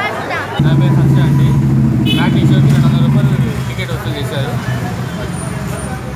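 Crowd chattering, with a motor vehicle's engine running close by: a steady low hum that starts suddenly about half a second in, is the loudest sound for the next three seconds and then fades back under the voices.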